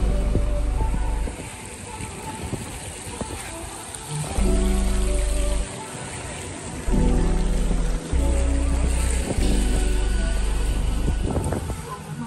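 Background music with deep bass notes that drop out and come back several times.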